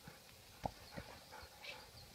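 Two faint short knocks about a third of a second apart, over a quiet outdoor hiss.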